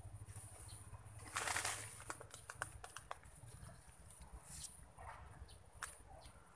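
Leaves and stems rustling and brushing close to the microphone as the phone is pushed through dense foliage, with scattered small clicks and one louder rustle about one and a half seconds in. A faint steady high-pitched tone runs underneath.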